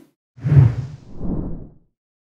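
Whoosh sound effects for an animated logo sting: two swishes, the first about half a second in and the second, softer one about a second in, then silence.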